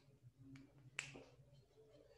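Near silence: room tone with three faint short clicks, the sharpest about a second in.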